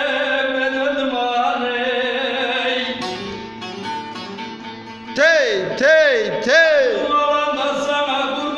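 A man sings a Turkish folk song (türkü) to his own bağlama (saz): a long held note, a quieter stretch of plucked saz strings a few seconds in, then three loud swooping vocal phrases, each rising and then falling in pitch, before the song carries on.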